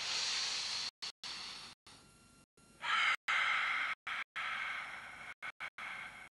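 A person's loud, breathy exhalations: a sudden hiss at the start lasting about a second, then a longer one about three seconds in that slowly fades. The audio drops out in short gaps throughout.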